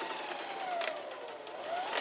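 Electric sewing machine stitching a seam through coat fabric, its motor whine falling in pitch about halfway through and rising again near the end, over a fast, even ticking of the needle.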